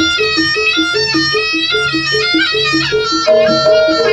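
East Javanese jaranan gamelan music: a reedy slompret shawm plays a nasal melody over a steady, evenly repeating figure of short pitched percussion notes, about three a second.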